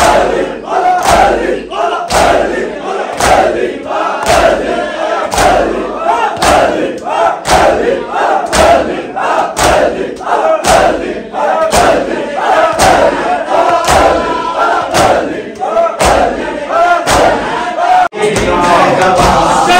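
A crowd of men chanting a mourning lament in unison while beating their chests with open hands together, a loud slap about once a second.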